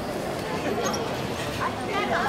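Crowd chatter: many people talking at once, with a few short high-pitched calls about a second in and near the end.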